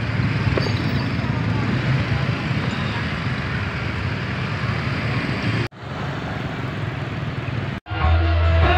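Small motor scooters running as they ride slowly along a road, with the steady low hum of their engines, road noise and voices mixed in. The sound cuts out abruptly twice near the end.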